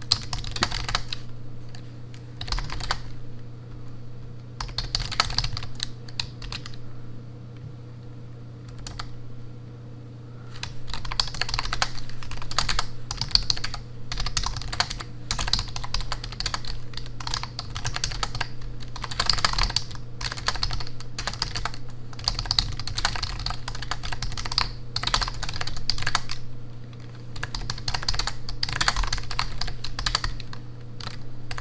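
Typing on a full-size backlit computer keyboard: short, scattered bursts of keystrokes for the first ten seconds or so, then steady fast typing with brief pauses.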